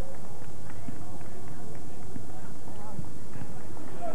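Many indistinct voices of players and people on the sideline calling out and chattering across a soccer field, overlapping, with no words standing out, on an old camcorder recording.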